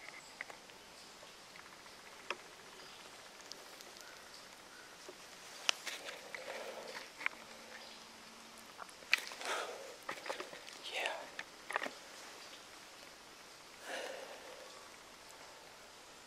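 A man whispering and breathing close to the microphone in a few short bursts, with light rustling between.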